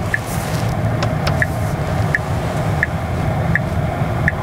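Interior of a moving Tesla Cybertruck: steady low road and tyre rumble with no engine note, and the turn-signal indicator ticking evenly about every three-quarters of a second as the truck turns.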